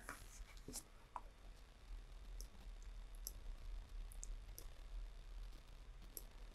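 A few faint, scattered computer mouse clicks over quiet room tone.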